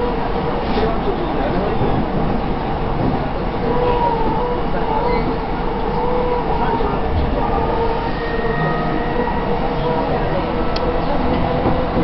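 Cabin noise of a JR East E233-1000 series electric motor car running at speed: a steady rumble of wheels on rail, with a thin steady whine from the traction motors.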